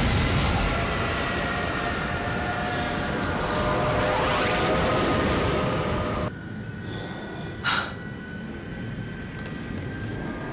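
Sci-fi TV sound effects for a starship hurtling through a collapsing space tunnel: a dense rumble with high tones gliding slowly down. The rumble cuts off abruptly about six seconds in, leaving a quieter hum with steady high tones and one brief sharp hit near eight seconds.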